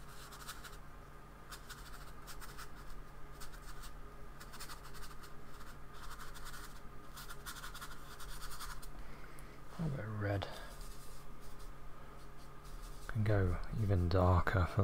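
Flat paintbrush dabbing and scrubbing acrylic paint onto the painting surface, a dry, scratchy sound in short, irregular strokes.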